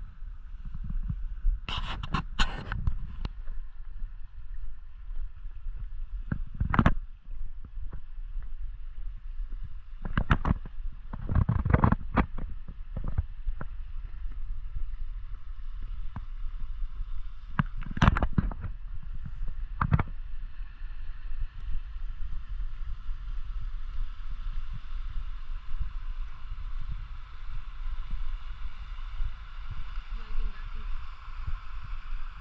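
Steady rush of a small mountain stream, a little louder near the end, over a low wind rumble on the microphone, with a handful of scattered footsteps on the dirt trail.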